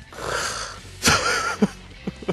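A man's breathy, wheezing laughter, with a sudden louder burst about a second in.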